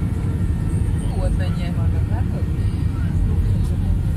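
Steady low rumble of a jet airliner's engines and airflow heard from inside the cabin on approach, with faint voices about a second in.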